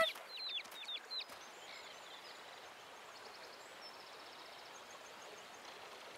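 Chicks peeping, a few short falling cheeps in the first second or so. Then a faint, steady rural outdoor ambience with soft birdsong.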